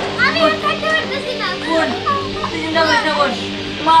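A child wailing and crying out in distress, calling "ma", the voice wavering and breaking in pitch, over steady background music.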